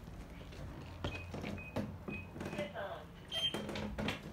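A person's voice speaking indistinctly, with a few short high-pitched beeps and scattered soft knocks.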